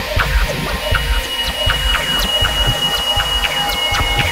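Experimental electronic instrumental music: a low throbbing bass pulse under scattered clicks, with a high steady synth tone entering about a second in and a second steady tone joining near the end.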